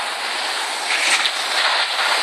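Steady hiss of skis sliding and scraping over packed snow.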